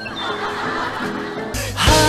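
Sitcom laugh track: canned audience laughter for about a second and a half. Then loud end-card music with a heavy bass line comes in.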